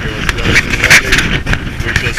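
Wind buffeting the microphone, a loud, gusty rumble that swells and dips.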